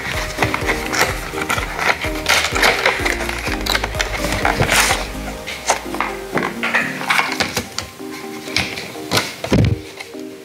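Background music with a steady beat, over the handling sounds of a phone-case package being opened: repeated clicks, knocks and rustles of the packaging, with a heavier thump near the end.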